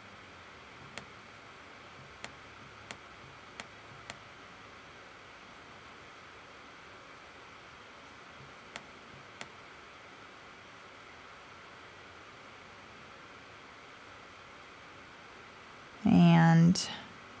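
Faint, sharp computer-mouse clicks, about seven: five in the first four seconds and two close together around nine seconds in. A steady low hiss of room tone and microphone noise runs underneath.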